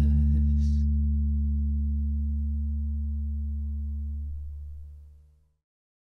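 The song's final low note on electric bass, with the backing track, rings out and slowly fades, dying away about five and a half seconds in.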